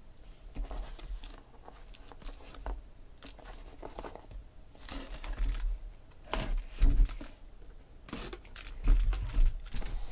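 A small knife slits the packing tape on a sealed cardboard shipping case, then tape tears and the cardboard flaps are pulled open, with crackling and scraping. The louder scraping and tearing comes in the second half.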